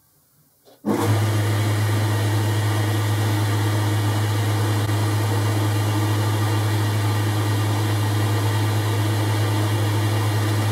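Boxford lathe switched on about a second in, then running steadily with a strong low hum as the chuck and mandrel spin.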